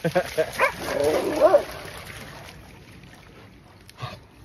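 A dog giving several short barks and yips, bunched in the first second and a half.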